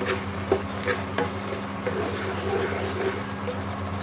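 Wooden spatula stirring and scraping stink beans in a thick curry-paste sauce in a non-stick wok, with a light sizzle from the pan. A few sharp knocks of the spatula on the pan, the loudest about half a second in.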